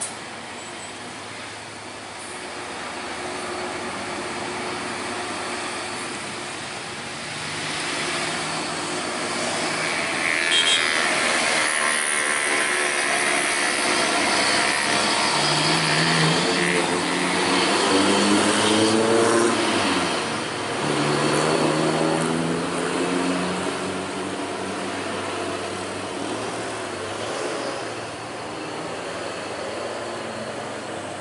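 Road traffic passing close by, with a heavy truck's diesel engine loudest through the middle as a container semi-trailer goes past, its engine note rising and falling.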